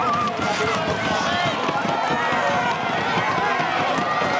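Many spectators shouting and cheering at once, with the skaters' blades scraping on the ice.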